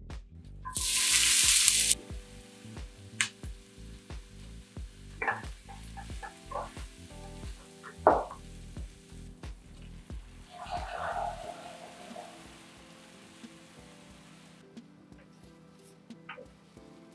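Whole spices sizzling in hot oil in a nonstick skillet, in a loud burst about a second in. Then a wooden spoon knocks and scrapes against the pan as the food is stirred, with the sharpest knock about eight seconds in, and a softer stirring stretch past halfway. Background music plays throughout.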